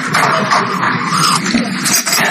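Slurping sips from a mug of drink, close to the microphone.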